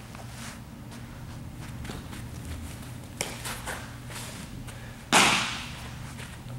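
A single sharp crack of a softball bat hitting a ball, about five seconds in, echoing briefly through a large hall; a fainter click comes about two seconds earlier.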